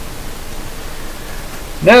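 Steady hiss of background noise with no other sound, then a man's voice starting a word near the end.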